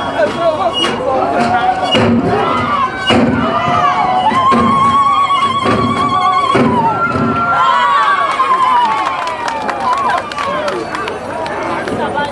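Zulu dance performance: voices chanting and calling, with long wavering high-pitched calls in the middle, over sharp irregular thuds from the dance.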